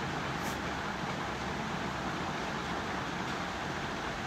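Steady, even background noise, a constant hiss and hum with no distinct events.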